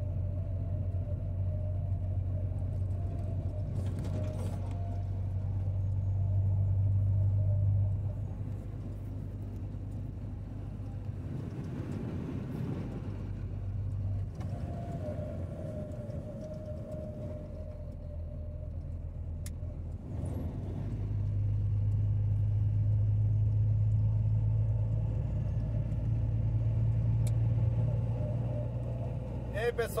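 Motorcycle engine running at a steady cruise, with road and wind noise. The engine drone swells for a few seconds and drops off sharply about eight seconds in, then swells again for most of the second half.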